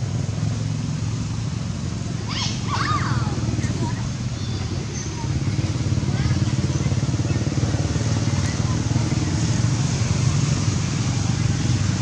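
Steady low rumble of outdoor background noise, like a running engine, under indistinct voices. A brief cluster of high, sweeping chirps comes about two and a half seconds in.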